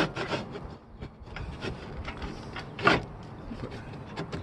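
Hands rubbing and sliding along a metal roof-rack rail while it is checked for clearance over a roof fan's cover, with a sharp knock at the start, a few light clicks, and a louder scrape about three seconds in.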